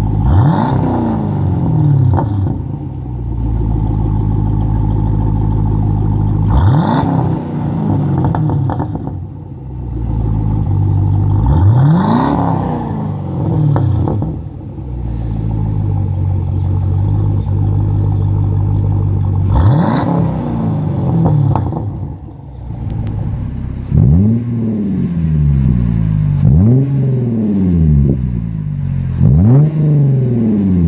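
2014 Chevrolet Camaro SS 6.2-litre V8 through a Flowmaster Outlaw exhaust, idling and revved four times, each rev climbing sharply and falling back to idle. Near the end comes a run of three quicker revs.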